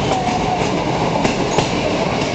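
Moving passenger train heard from an open carriage window: a steady rumble of the wheels on the rails, with a few sharp clicks from the track a little past a second in.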